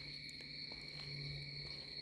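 Faint steady background: a high-pitched whine made of two level tones over a low hum, holding unchanged through a pause in speech.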